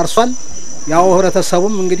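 Speech over a steady, unbroken high-pitched drone typical of a chorus of crickets.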